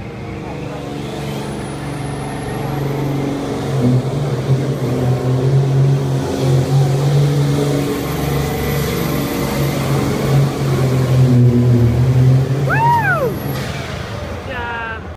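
Pro Farm class pulling tractor's turbocharged diesel engine running hard at full throttle as it drags a weight-transfer sled down the track, the engine growing louder from about four seconds in and holding until near the end, echoing in an enclosed arena. Near the end a shrill whistle rises and falls once.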